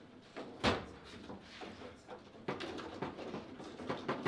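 Table football play: a single sharp knock about two-thirds of a second in, the loudest sound, then from about halfway a quick run of clacks and knocks as the rods slide and the ball is struck and trapped on the table.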